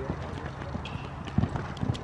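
Horse's hoofbeats at a canter on the soft sand footing of an indoor arena: dull thuds, a few of them clearer in the second half.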